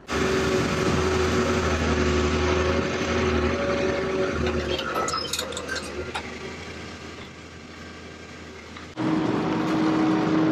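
Caterpillar 320 hydraulic excavator's diesel engine running steadily while it lifts a heavy truck frame, with a few sharp metallic clicks about halfway. Near the end it gives way abruptly to a different steady hum with one clear tone.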